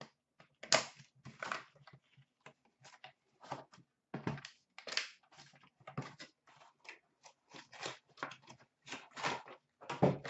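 Cardboard hockey card box being torn open by hand and its packs pulled out and set down: a run of short, irregular tearing and rustling scrapes.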